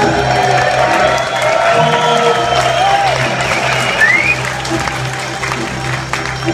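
Rock band and string orchestra playing live with sustained, held chords, while the audience applauds and cheers.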